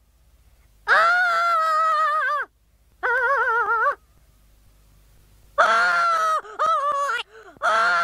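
A high-pitched character voice wailing in long, wavering moans: about five drawn-out cries, the first and longest lasting about a second and a half, with a quiet gap in the middle.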